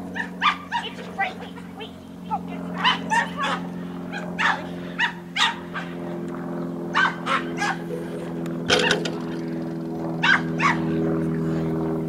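Dog barking excitedly and repeatedly while running an agility course: dozens of short, sharp barks in irregular bursts, over a steady low hum.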